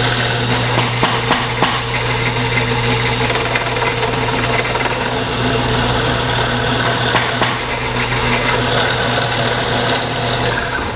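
Bandsaw running with a steady motor hum while its blade cuts a tenon in a thick hardwood workbench part held in a tenoning jig.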